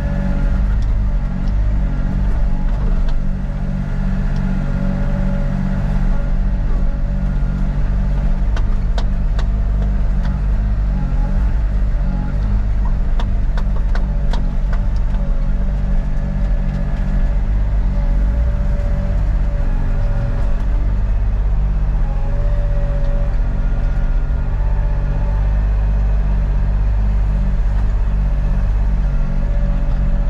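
Sany zero-swing excavator's diesel engine running steadily under working load, heard from inside the cab. A thin whine comes and goes over it, and a few sharp clicks stand out.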